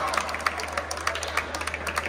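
A few people clapping, scattered claps several times a second, with faint voices in the background.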